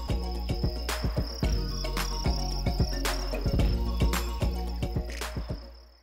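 Farmed crickets chirping in a continuous high trill over background music with a steady beat; the sound fades out near the end.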